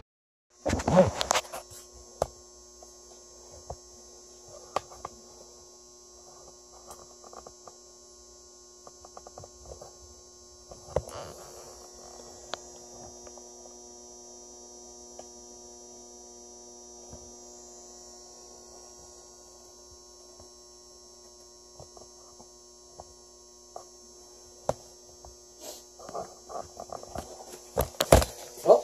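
EP-230 HHO gas generator running with a low, steady electrical hum and a faint high hiss. A few light knocks and clicks come through, more of them near the end.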